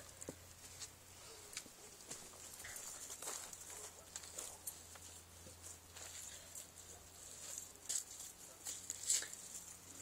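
Faint background with a low steady hum and scattered soft clicks and ticks, a few a little louder near the end.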